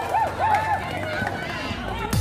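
Short calls and shouts from players and spectators at a basketball game, with footsteps of players running across an outdoor concrete court.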